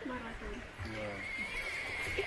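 A woman laughing in short voiced bursts, with a thin, steady high tone coming in near the end.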